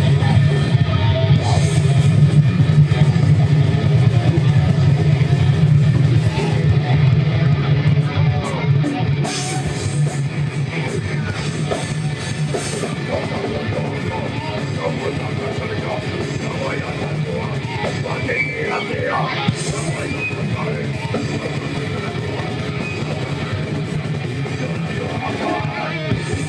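Live metal band playing: distorted electric guitars, bass and drum kit, a little louder for the first several seconds.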